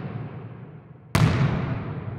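A deep cinematic boom hit about a second in, ringing out in a long fading tail. The first second is the dying tail of a similar hit from just before.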